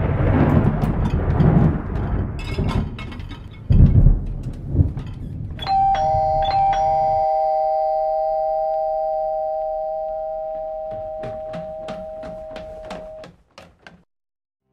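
Dishes and cutlery clattering as a dishwasher is unloaded. About six seconds in, a two-tone ding-dong doorbell chime rings, a higher note and then a lower one, fading slowly over about seven seconds. A few light clicks come near the end.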